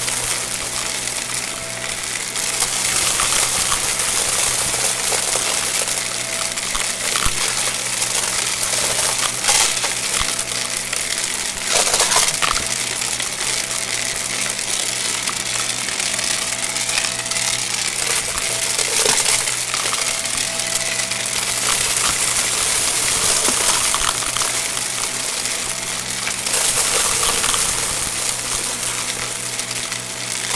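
Shark upright vacuum, recorded through a mic attached to the vacuum itself, running steadily with a loud airflow hiss and a motor hum. Small hard debris rattles and clicks through it as it is sucked up.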